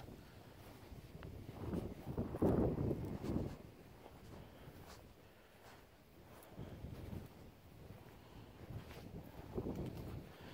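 Wind buffeting the microphone in gusts, strongest about two to three and a half seconds in and again near the end, with faint rustling and footfalls of someone walking over grass.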